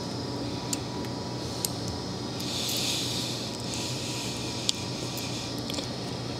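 Faint sounds of a whip finisher wrapping thread around a fly's head: a few light ticks and a soft hiss about two and a half to three and a half seconds in, over a steady low room hum.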